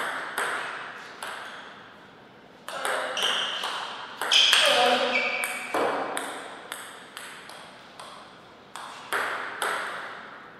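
Table tennis ball pinging off bats and the table, sharp clicks with a short ring, and a voice calling out loudly in the middle. Then the ball bounces about twice a second as it is brought back into play.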